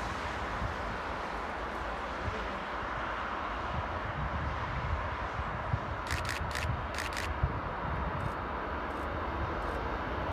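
Steady, distant rumble of traffic on the road beside the line, with the diesel snowplough train getting slightly louder as it approaches. A few faint clicks come about six to seven seconds in.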